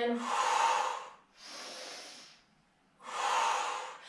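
A woman breathing hard in time with a Pilates movement: three audible breaths about a second each, two strong ones with a softer one between, paced as cued inhales and exhales.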